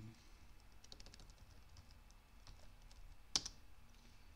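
Typing on a computer keyboard: a quick run of key clicks about a second in, scattered taps after, and one sharp, louder keystroke near the end.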